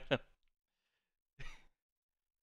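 A man's single short breathy exhale, like a quick laugh or sigh, about one and a half seconds in, after the end of a spoken word.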